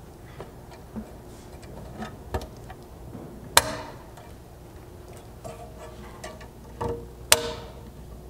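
Steel clip nuts being slid over the flange holes of a steel rock slider and snapping into place: scattered light metallic clicks and taps, with two louder sharp snaps that ring briefly, one a little before halfway and one near the end.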